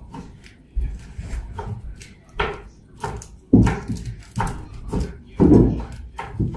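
A string of irregular knocks and clatters, with a few short low voice sounds in between.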